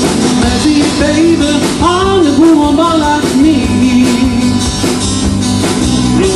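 A live rock band playing through a PA: electric and acoustic guitars over a drum kit, with a melody line rising and falling in pitch from about two seconds in.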